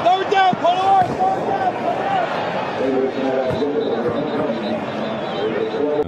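Indistinct voices talking over a steady background hiss of crowd or outdoor noise.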